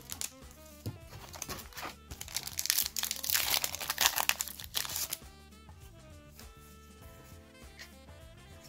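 A foil Yu-Gi-Oh booster pack wrapper crinkling as it is torn open by hand, loudest from about two and a half to five seconds in, over background music.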